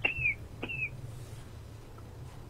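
Two short, high chirps about half a second apart, each gliding slightly downward, like a small bird calling, over a low steady hum.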